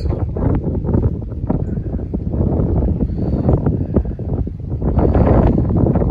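Wind buffeting the microphone as a loud, rough rumble, with footsteps on an OSB plywood subfloor deck.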